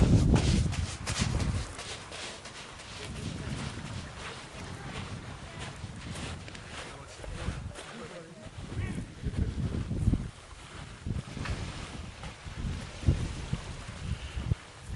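Wind buffeting the microphone for the first second and a half or so, then quieter open-air sound with scattered clicks and crunches of footsteps on beach rocks and pebbles, and faint distant voices.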